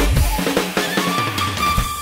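Acoustic drum kit played live along to an electronic dance track: kick, snare and cymbal hits over the track's bass line. About halfway through, the hits thin out while a steady high note in the track is held.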